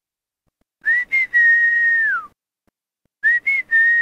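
A whistled call heard twice, about two seconds apart. Each call is two quick short notes and then a long steady note that slides down in pitch at the end.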